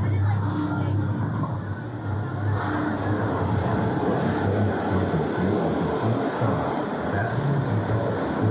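Roller coaster train rolling out of the station toward the lift hill, a steady rumble of wheels on steel track, with voices and music mixed in.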